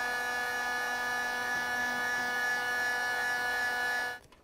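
Electric heat gun running steadily, a whining fan tone over the hiss of blowing air, as it shrinks the heat-shrink sleeve on a crimped wire connector.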